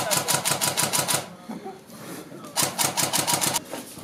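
Airsoft rifle firing two fully automatic bursts of about a second each, the second starting about two and a half seconds in: rapid, even clicks at roughly a dozen shots a second.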